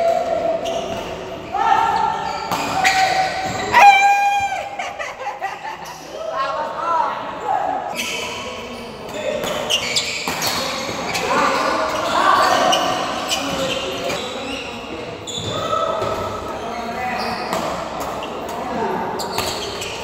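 Doubles badminton rallies on an indoor court: repeated sharp racket strikes on the shuttlecock and footfalls, echoing in a large hall. Players' voices run underneath, and there is a brief loud squeal about four seconds in.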